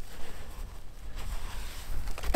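Hands digging and scraping at damp clay soil at the bottom of a hole: soft, irregular scuffing and rustling over a steady low rumble.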